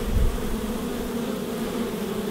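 A crowd of honey bees buzzing together in a steady, even drone, with a brief low rumble just after the start.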